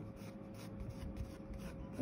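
Pencil lead scratching lightly on paper in short curved strokes, over a faint steady hum.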